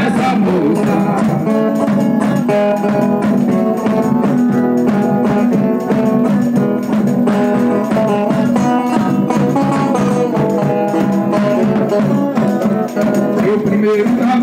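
Live Brazilian folk dance music of the São Gonçalo roda: instruments keep up steady held chords over a brisk beat, with singing.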